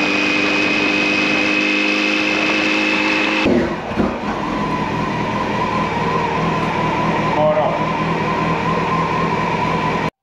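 Honda CB900F Hornet's inline-four engine running steadily as the motorcycle cruises along a road. About three and a half seconds in it cuts to the same engine idling steadily in a garage.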